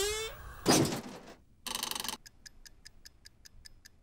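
Cartoon computer sound effects: a short rising whistle, a thud and a brief buzz, then quiet, rapid, even ticking of an oven timer at about six ticks a second.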